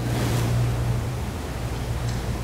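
Steady hiss with a low, even hum underneath: background noise from the room and sound system.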